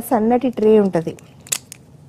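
A woman talking for about a second, then a short sharp hiss about one and a half seconds in, followed by a pause.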